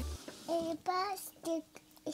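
A toddler's high voice in a few short sing-song syllables.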